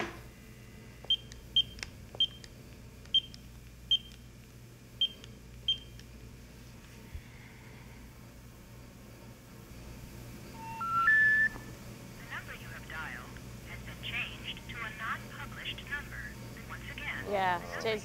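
A telephone keypad dialing a number: seven short beeps. About ten seconds in come three tones rising step by step, the special information tone that signals a call cannot be completed. A recorded intercept voice follows over the line.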